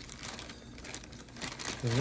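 Clear plastic kit bag crinkling continuously as it is handled, with the plastic sprues inside.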